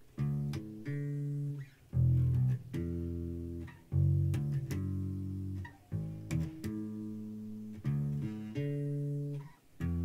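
Ibanez Musician four-string electric bass played fingerstyle and unaccompanied: a slow line of sustained single notes, with a new phrase starting about every two seconds.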